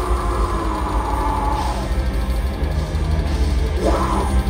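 A heavy metal band playing live at full volume: distorted electric guitars, bass and drum kit in a dense, continuous wall of sound with a fast low drum pulse underneath.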